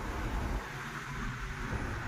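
Steady road and engine noise of a car driving at speed, heard from inside the cabin: a low rumble with a fainter hiss above it.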